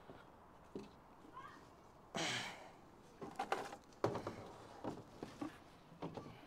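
Faint knocks and scrapes of a plastic children's slide being carried and set down, with footsteps over garden debris. A short breathy rush of noise about two seconds in is the loudest moment.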